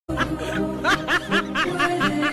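A person laughing in quick, evenly repeated bursts, about five a second and growing stronger about a second in, over background music with steady held notes.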